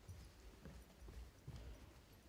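Faint footsteps and soft knocks, irregular and about a second apart, as someone hurries across the hall carrying a roving handheld microphone.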